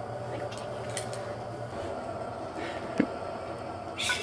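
Room tone with a steady low hum, a few faint clicks and one sharper click about three seconds in.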